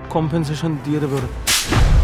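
A single sharp, loud slap across a man's face about one and a half seconds in, cutting off a man's speech, followed by a low rumble.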